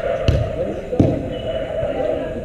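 A football being kicked twice, two dull thuds less than a second apart.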